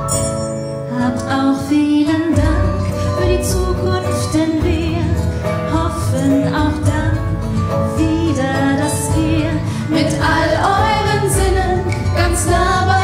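Live music: an acoustic guitar accompanying female voices singing.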